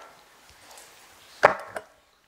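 Handling noise from a lectern microphone: one sharp knock about one and a half seconds in, followed by a few lighter clicks.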